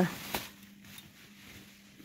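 A single brief click about a third of a second in, then a quiet background with a faint steady hum.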